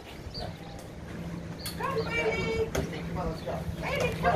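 Indistinct voices of people talking, loudest in the second half, over a steady low hum and a low rumble.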